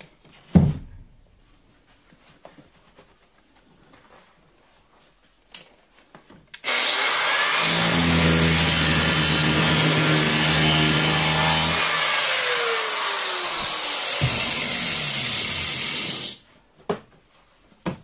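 A single thump shortly after the start. About seven seconds in, an angle grinder with a small worn-down abrasive disc starts up and grinds the bucked tails off steel solid rivets for about ten seconds, then cuts off suddenly.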